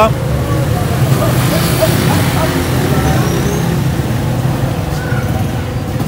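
Street traffic noise with a steady low engine rumble, and voices in the background.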